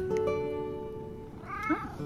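A cat gives one short meow about one and a half seconds in, over acoustic guitar music.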